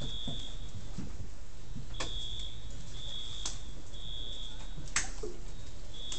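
A high-pitched electronic beep, each about half a second long, repeating roughly once a second, with three sharp clicks in between.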